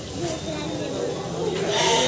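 Goats bleating over the chatter of a crowd.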